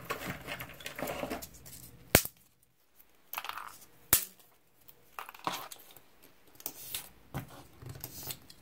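Small pieces of sorghum-pith craft stick being handled and set down on paper: soft rustling with a few sharp clicks, the loudest about two and four seconds in.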